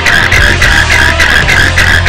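A loud, high-pitched electronic tone pulsing about four times a second, like an alarm, over a steady low rumble.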